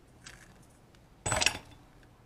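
A short clatter of a small hard object knocking on a hard surface a little over a second in, after a faint click.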